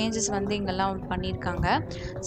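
A woman's voice talking over background music.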